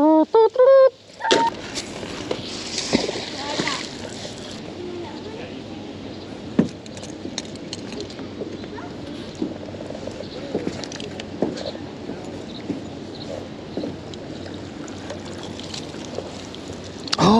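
Water splashing and dripping as a magnet-fishing rope is hauled in hand over hand from the river, with scattered clicks and knocks, one sharper than the rest about six seconds in.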